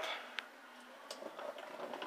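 Quiet room tone with one faint sharp click about half a second in and a few soft ticks later on.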